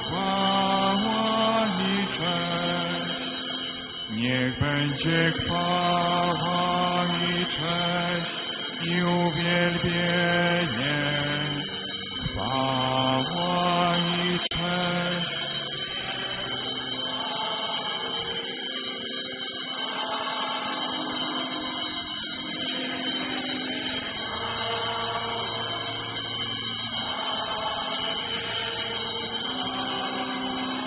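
Church organ playing slow, held chords. The notes move step by step through the first half and hold longer in the second.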